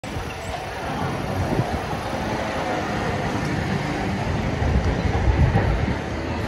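Town street ambience: a steady wash of traffic and pedestrian noise with an uneven low rumble, a little louder near the end.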